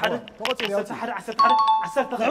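A two-note chime, a higher tone then a slightly lower one, starts about a second and a half in and rings on steadily, over people's voices.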